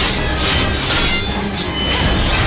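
Action film soundtrack: a dramatic score mixed with fight sound effects. A run of loud, noisy swells and hits sits over a steady deep rumble.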